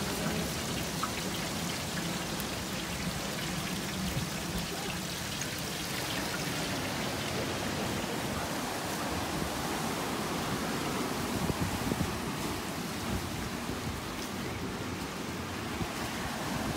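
Surf breaking and washing over a rocky shore: a steady rushing noise.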